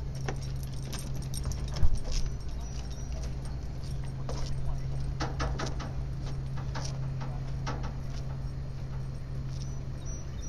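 Dog's collar tags jingling in irregular short clicks as the dog is walked, over a steady low hum, with one sharp knock about two seconds in.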